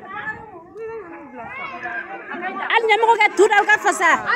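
Several voices talking and chattering, growing louder and busier in the second half.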